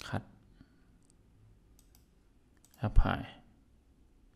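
A few faint computer mouse clicks in a small room, spread through the first half.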